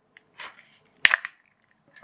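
A single sharp snap about a second in as a glued pack of 18650 lithium-ion cells is prised free of a plastic laptop battery casing, with a softer scrape of cells against plastic just before.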